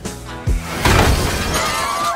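A loud crash of something shattering about half a second in, over background music, with ringing near the end.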